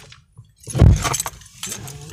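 A loud thump about a second in, followed by a short jangling rattle like keys swinging, inside a slowly moving car.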